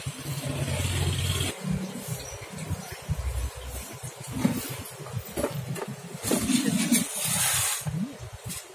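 A steady motor hum that cuts off suddenly about a second and a half in, followed by irregular knocks and handling noise, and a short burst of hiss near the end.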